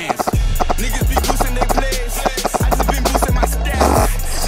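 Hip hop music: a deep, sustained bass comes in shortly after the start and slides down in pitch several times, under a fast ticking beat, with no vocals.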